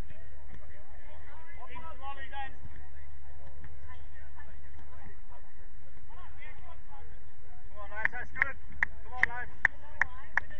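Distant, indistinct calls of footballers over a steady low hum, with a quick run of short, sharp sounds in the last two seconds.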